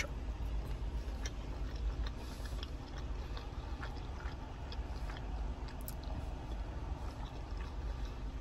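A man chewing a bite of smoked barbecue sausage, faint small mouth clicks over a steady low hum in a car cabin.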